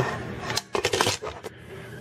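9-pin cable connector being pushed and seated into its socket on the back of a home-theater media center: a few small plastic-and-metal clicks and scrapes in the middle.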